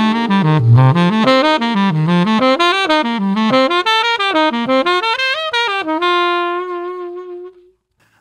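Jazz saxophone playing an ascending criss-cross arpeggio exercise over F7 to C minor 7: quick eighth-note arpeggios climbing up and down through the chord tones. It ends on one long held note that fades out near the end.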